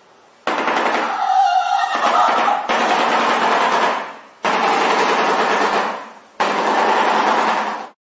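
Shoebill clattering its bill: three long bursts of rapid rattling, like machine-gun fire, with short pauses between them.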